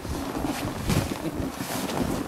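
Wind buffeting the microphone in gusts, with the rustle and scuffle of people grappling in padded snowmobile suits.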